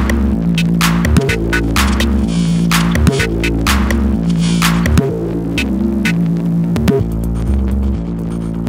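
Old-school 90s-style techno track: a repeating analog synth bassline pulsing in a looped pattern of low notes under drum hits and hi-hats. The mix drops slightly in level about five seconds in.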